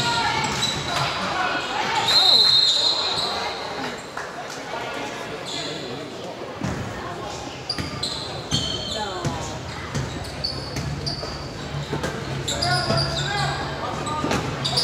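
Basketball game in a gym: a ball bouncing on the hardwood as it is dribbled, sneakers squeaking in short high streaks, and voices of players and spectators echoing in the hall.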